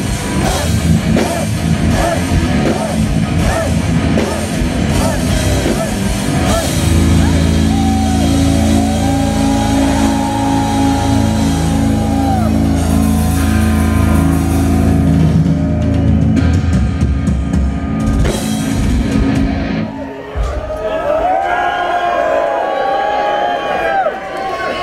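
Melodic death metal band playing live, drums and distorted guitars at full volume, with a stretch of long held chords in the middle. The music stops about 20 seconds in, and the crowd shouts afterwards.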